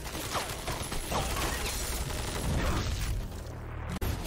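Cartoon sound effects of automated weapon turrets locking onto a target: a dense, steady mechanical noise.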